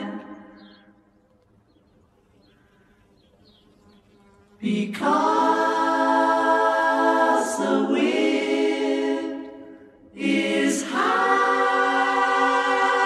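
A choir singing long held chords without accompaniment. A chord fades away, then after about three seconds of near silence the voices come in suddenly on a sustained chord, fade out briefly, and come in again to hold another chord.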